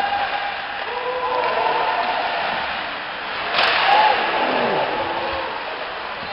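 Ice hockey game heard from the stands: scattered spectator shouts and calls over a steady arena din, with one loud sharp bang from the play about three and a half seconds in.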